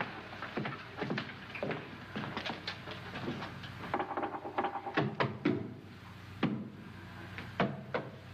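Knuckles knocking on a wall: a series of irregular knocks, some in quick runs of two or three, over a steady low hum.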